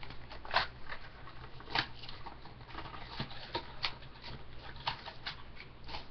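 Hockey card packs and their emptied cardboard box being handled on a desk: a dozen or so irregular light clicks and rustles, over a steady low hum.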